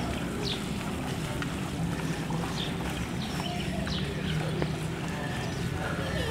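Outdoor ambience: a steady low rumble with scattered short, high chirps of small birds.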